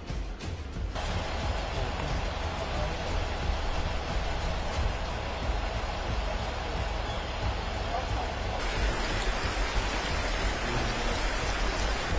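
Steady outdoor background noise: a deep, uneven rumble under a hiss, changing abruptly about a second in and again near nine seconds as the shots change.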